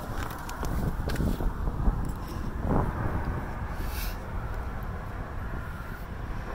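Wind buffeting a phone's microphone, with faint knocks and rubbing from the phone being handled.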